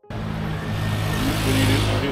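City street traffic: a car passing along the road, its engine hum and tyre noise building to a peak about one and a half seconds in, then easing.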